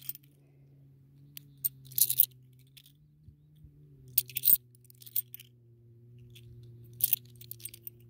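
Australian 50-cent coins clinking against each other as they are handled and sorted in the hand: short, sharp metallic clicks in several small clusters a second or two apart, over a faint steady low hum.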